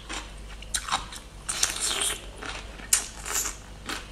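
Close-up crunching bites and chewing of bamboo shoot, with a few sharp crisp snaps among crackly chewing sounds.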